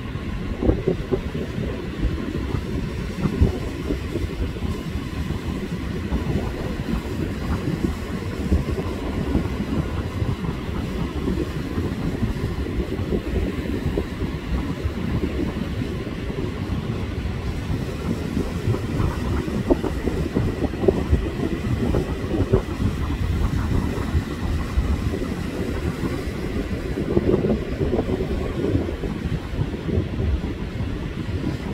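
Ocean surf breaking and washing up a sandy beach, a steady low rumble with small rises and falls.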